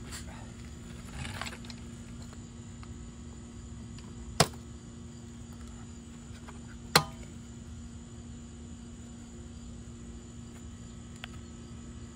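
Two sharp plastic clicks, about two and a half seconds apart, as a motorcycle headlight housing and its rubber bulb boots are handled. Under them run a steady low hum and a thin, high, constant insect trill.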